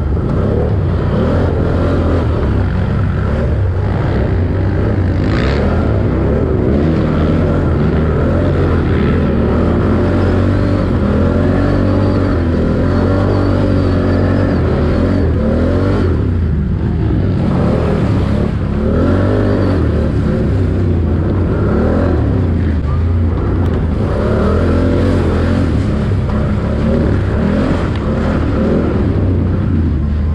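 The engine of an off-road race machine, ridden hard over rough trail and heard close up. It revs up and down continuously, its pitch rising and falling with the throttle, and eases off briefly about halfway through.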